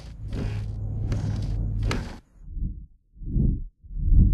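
Horror-trailer sound design: a low drone under rhythmic swishing pulses about every three-quarters of a second. It cuts off suddenly about two seconds in, followed by slow, low, swelling thuds.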